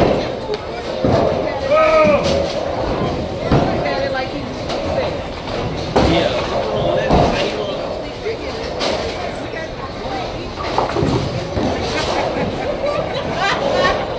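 Bowling alley din: repeated crashes and knocks of balls and pins on the lanes over a bed of background chatter.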